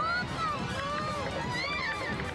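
High-pitched wordless cries from a cartoon character, gliding up and down in pitch, over background music.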